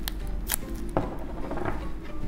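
Cardboard piggy bank wrapped in masking tape being handled on a table: a few sharp taps and knocks about half a second apart in the first second, then softer rustling.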